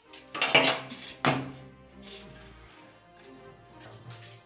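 Two sharp clattering knocks about a second apart as hard objects, a prop pistol among them, are handled and put down on a table, over quiet background music.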